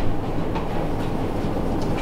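Steady low rumble of room background noise, with no speech.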